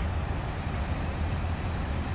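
A steady low rumble with a faint hiss above it, without distinct knocks or changes.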